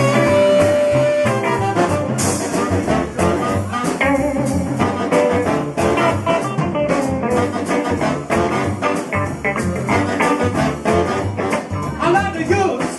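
Live band playing an instrumental passage: saxophone and a second horn over hollow-body electric guitar, upright double bass and drum kit, opening with a held horn note.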